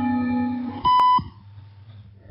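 Shortwave radio broadcast from Radio Thailand heard through a software-defined receiver: music stops, then a single loud, short, high steady beep sounds about a second in, followed by faint background static.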